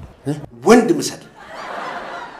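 A man's short voiced sounds, then a soft breathy chuckle from about halfway through.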